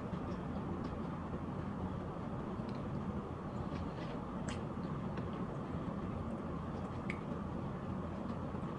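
Quiet, steady room noise with a few faint, short clicks spread through it.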